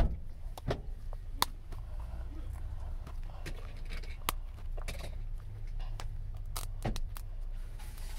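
A plastic toy package being worked at by hand as it resists opening, with scattered sharp plastic clicks and knocks close to the microphone. A steady low rumble runs underneath.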